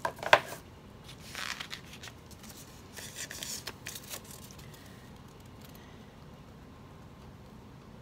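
Stiff construction paper being handled: a few sharp clicks right at the start, then brief rustles about a second and a half in and again around three to four seconds in.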